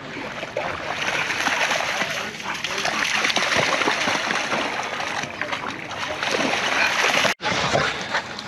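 Two dogs running and splashing through shallow water, a continuous churn of splashing that briefly cuts out near the end.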